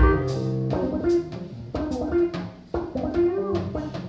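Live instrumental band music: electric bass guitar, drum kit and keyboards playing together. A loud low kick-and-bass hit opens it, then repeated cymbal strikes over held keyboard notes, with a brief bending note past the middle.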